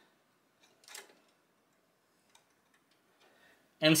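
A single light click about a second in, then a few much fainter ticks: a small metal thumb screw being handled and set at the graphics card's bracket in a steel PC case.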